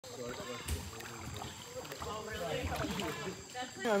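Faint, indistinct voices talking, with a brief knock under a second in; a louder voice starts speaking near the end.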